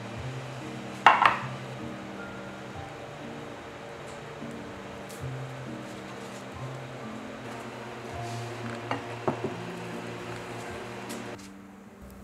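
Soft instrumental background music with slow held notes. A sharp knock about a second in, like something set down on a counter, and a few light clinks near the end.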